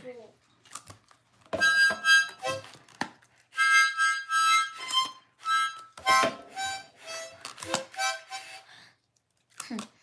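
A harmonica played by a small child, blown and drawn in short, uneven bursts of chords. It starts about a second and a half in and stops about a second before the end.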